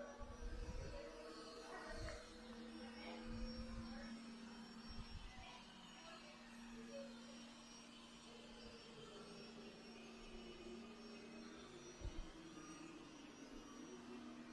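Faint, steady hum of a DEENKEE D30 robot vacuum running on carpet, with a few soft low thumps in the first few seconds and again near the end.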